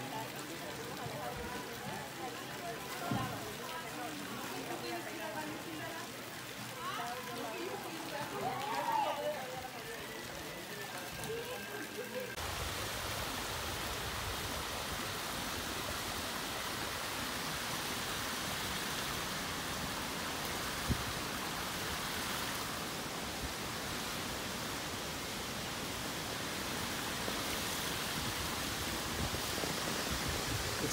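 Faint distant voices for about twelve seconds. From then on there is a steady rushing hiss from the steaming, near-boiling hot-spring water of a geothermal field, mixed with wind.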